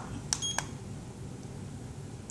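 Button press on a La Crosse projection alarm clock, the MODE button pressed to exit alarm setting. A click, a short high-pitched key beep, and a second click, all about a third to half a second in.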